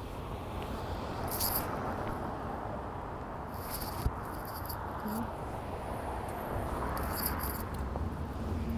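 Steady outdoor street ambience: a low hum under an even hiss, with a few short, high swishes about a second and a half, four seconds and seven seconds in.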